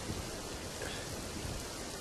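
Steady rain, an even hiss of falling rain with no voice over it.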